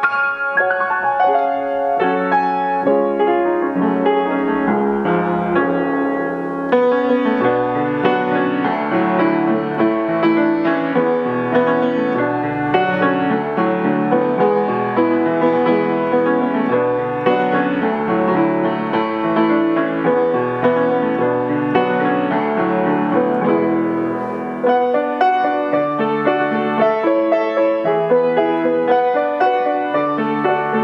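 Welmar baby grand piano being played: a continuous passage of notes and chords, with two short lulls between phrases.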